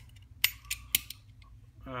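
Three sharp clicks, about a quarter second apart, with a few fainter ones, from the small metal parts of a folding utility knife being handled.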